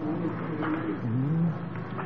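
A man's voice in melodic Quran recitation, drawing out one long held note that dips and slides lower about a second in, over a steady background hiss.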